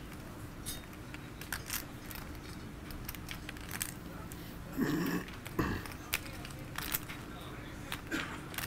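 Clay poker chips clicking now and then as they are handled at the table. A brief voice sound comes about five seconds in.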